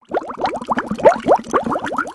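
Bubbling water sound effect: a dense stream of quick rising bloops, about five a second, starting suddenly.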